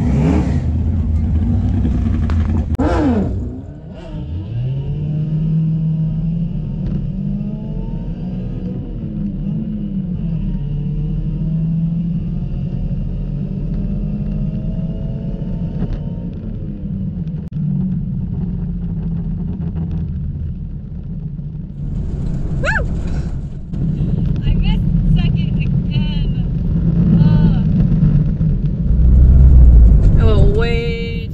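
Car engine running at low revs, heard inside the cabin, its pitch rising and falling gently as the car is driven slowly. A faint steady high whine sits over it for the first part.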